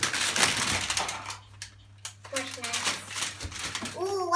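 Plastic snack wrappers crinkling and rustling as packages are handled in and around a cardboard box. It is loudest in about the first second, then thins to scattered rustles. A voice is heard faintly partway through.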